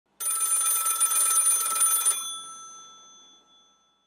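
An old-style telephone bell ringing for about two seconds, then stopping abruptly and ringing out as it fades.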